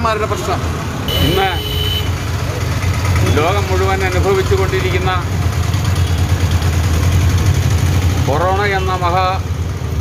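Steady low rumble of a motor vehicle engine idling close by, strongest in the middle, under short snatches of men's voices.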